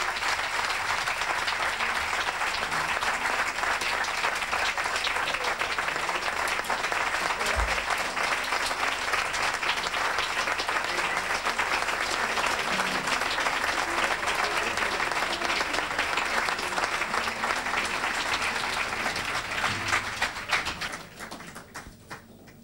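Audience applauding: dense, steady clapping that dies away about a second and a half before the end.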